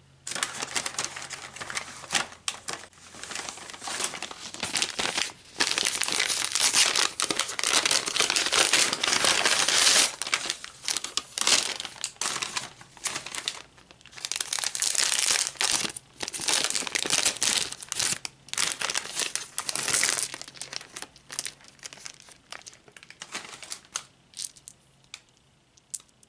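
A bag crinkling and rustling as hands rummage through it, in bursts that come and go. It is loudest from about five to ten seconds in and again from about fourteen to twenty seconds, then fainter and sparser near the end.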